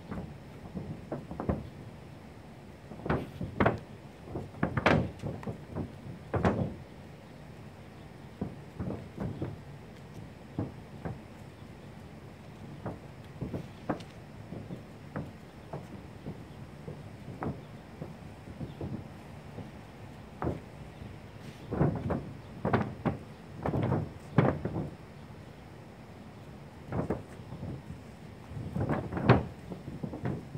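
Irregular dull knocks and bumps in short clusters, from a long-handled paint roller being worked against the edge of a metal mobile home roof to wring out excess roof coating.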